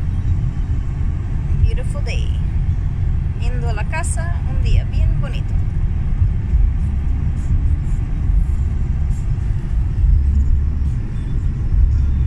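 Steady low rumble of road and engine noise heard inside a car cruising on a highway.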